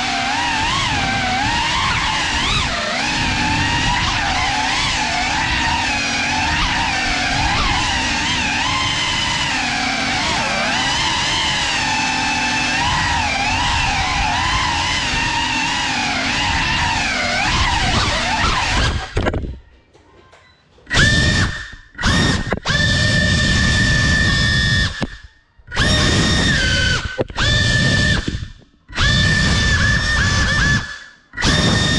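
Cinelog 35 cinewhoop FPV drone's motors and ducted propellers whining in several shifting pitches that rise and fall with the throttle. About two-thirds through the whine cuts out, then comes back in several short bursts of steady high whine with silent gaps between, as the throttle is chopped and punched.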